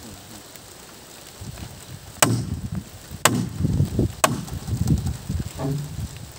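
Three sharp chopping blows about a second apart as a machete strikes the wooden poles of a pole-framed hut being taken apart, with low knocking and scraping of the loosened timber between the blows.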